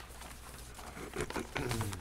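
Quiet meeting-room tone with a steady low hum. In the second half come faint off-microphone voices and light rustling and clicks.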